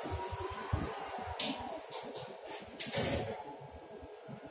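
Schindler service elevator car at rest with low background noise, a few sharp clicks and a louder knock about three seconds in.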